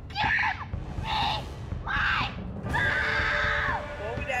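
A teenage boy screaming in four high-pitched bursts, the last held longest, in a mock Super Saiyan power-up yell.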